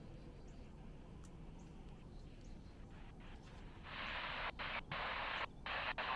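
Faint background for about four seconds, then the Wouxun handheld radio's speaker comes in with a loud static hiss that cuts out briefly three times. This is the received NOAA weather radio signal breaking up at the edge of the attenuated Yagi antenna's beam.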